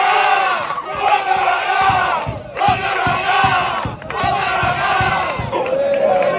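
A group of men shouting and chanting together in celebration, in three loud bursts with short breaks between them, and a run of rhythmic low thumps under the second half.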